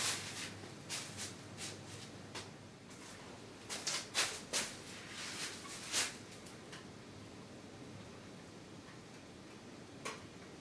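Paintbrush working acrylic paint onto a stretched canvas: a scatter of short, scratchy dabs and strokes, thickest between about four and six seconds in, then fading to a faint steady hiss.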